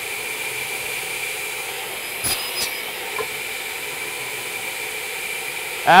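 Steady hiss of workshop machinery with a faint high whine, and two sharp clicks close together about two seconds in.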